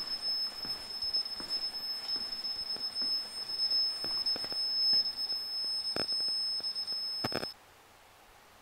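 An electronic alarm sounds one steady high-pitched tone that cuts off suddenly near the end. A couple of faint knocks come shortly before it stops.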